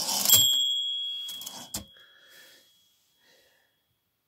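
Olympia SM9 manual typewriter: a short clattering slide of the carriage, then the typewriter's bell gives one clear ding that rings on and fades over about two seconds. A single sharp click follows near the end of the ringing.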